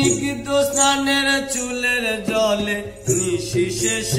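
Bengali folk song: a male voice holds long, bending sung notes over a plucked ektara, with strokes on a small hand drum.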